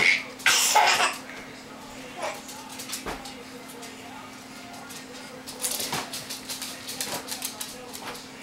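A toddler's belly laughter in short bursts, loudest in the first second and again in a quick run near the end, over a low steady hum.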